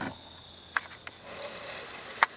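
Faint outdoor background: a steady, high-pitched insect chirring, with one short click about three-quarters of a second in.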